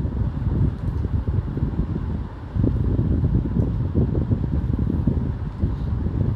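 Low, uneven rumble of air noise on the microphone, dipping briefly a little past two seconds in.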